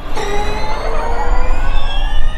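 Formula E racing car's electric drivetrain whining and rising steadily in pitch as it accelerates, with a low rumble beneath.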